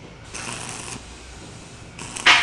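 Arc welding on a steel beam: a short burst of crackling hiss lasting well under a second, then a low background.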